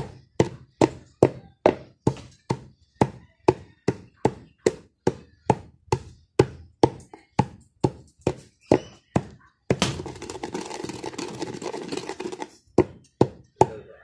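A pestle pounding incense resin and kamangyan (benzoin) in a mortar to crush them to powder, a steady beat of about two strikes a second. About ten seconds in the strikes stop for roughly three seconds of steady rushing noise, then the pounding starts again.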